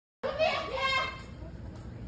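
A high-pitched raised voice shouting for about a second, starting just after a brief dropout to silence, then fading into low background noise.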